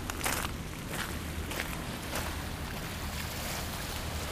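Footsteps crunching on gravel, several in a row about 0.6 s apart, over the steady rush of a fast-flowing flooded river.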